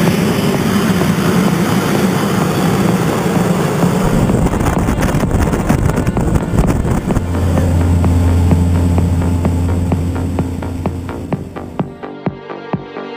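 Single-engine light aircraft's piston engine and propeller running close by. Electronic music with a steady beat fades in about four seconds in and takes over by the end.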